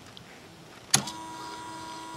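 A sharp switch click about a second in, then a steady electric motor hum as the solar collector's rotation drive starts turning.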